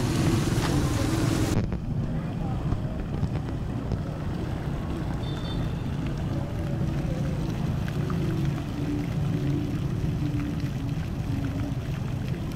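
City street ambience: a steady low rumble of traffic and crowd with faint music. A brighter hiss cuts off suddenly about a second and a half in.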